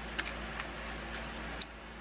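A few light clicks and taps of cardboard kit pieces being handled, with one sharper click near the end, over faint steady room hiss.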